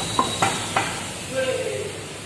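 Alloy wheel and tyre being pushed onto a car's hub by hand: three sharp knocks and clicks in the first second, over a steady hiss.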